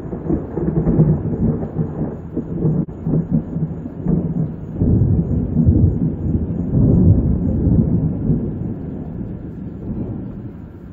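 Rolling thunder: a long, loud low rumble that swells in waves, strongest a little past the middle, then dies away near the end.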